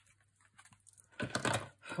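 Sheet of card stock being handled on a craft desk: a quick run of scratchy rustles and light clicks starting just past the middle, as the card is marked with a pencil and lifted.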